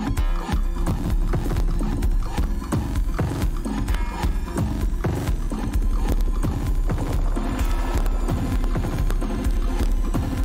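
Dance music played through a club-style sound system from a DJ mix, with a heavy bass line, a steady beat and busy knocking percussion.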